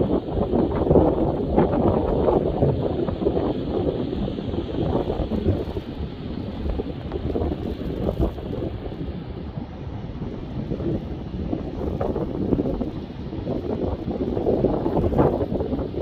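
Wind buffeting the microphone in gusts, a low rumbling noise that eases off about halfway through and builds again near the end.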